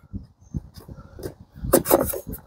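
Polystyrene hive panels rubbing and knocking lightly as they are handled and fitted together, with a louder scrape near the end.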